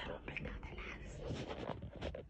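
Someone whispering, low and breathy.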